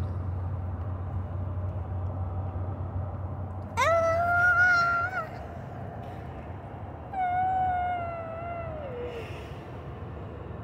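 Two long, high wordless vocal calls over a steady low hum. The first is held for about a second and a half. The second is held for about two seconds and slides down in pitch at its end.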